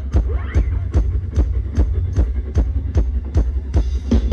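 Upbeat dance music from a stage band: a steady, heavy drum beat of about two and a half beats a second over strong bass. Near the end more instruments come in and the sound fills out.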